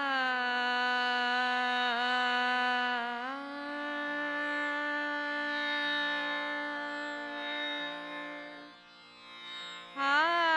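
A woman sings a slow Hindustani vilambit khayal in raag Vibhas, holding long steady notes over a tanpura drone. She curves up into her first note, glides up to a higher held note about three seconds in, and lets the phrase fade out near the end.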